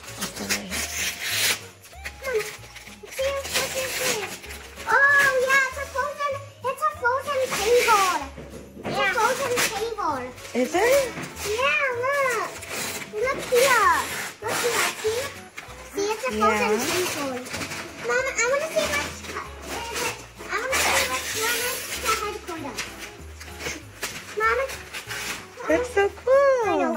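Wrapping paper being torn off a large gift box in repeated short rips, with young children's high voices and excited squeals between them.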